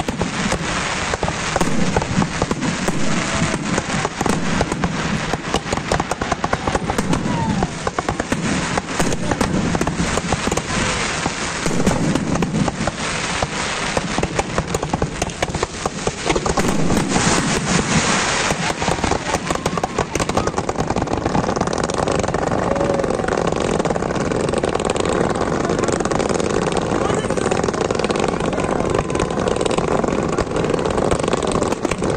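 A large fireworks display going off without pause: a dense run of rapid crackling and bangs that gives way in the second half to a steadier hissing rush of firework fountains.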